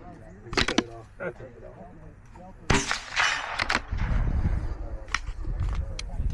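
Bolt of a scoped bolt-action precision rifle worked with short metallic clicks, then one loud rifle shot about three seconds in that rings out for about a second. A few more clicks and low rumbling handling noise follow near the end.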